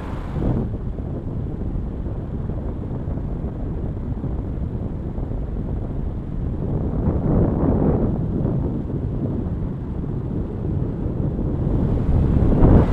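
Wind buffeting the microphone: a steady low rumble that swells for a second or so about seven seconds in.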